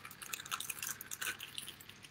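Raspberries being mashed by hand inside a zip-top plastic bag: faint, irregular crinkling of the plastic with soft squishing of the fruit.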